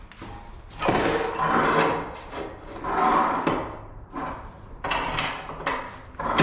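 Three rubbing or scraping strokes, each about a second long and about two seconds apart.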